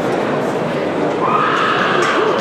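Crowd murmur in a hall, and near the end a person's high, wavering, whinny-like vocal cry lasting about a second.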